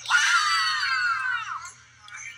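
A child's high-pitched yell, held about a second and a half and sliding down in pitch, coming from a video played back on a phone.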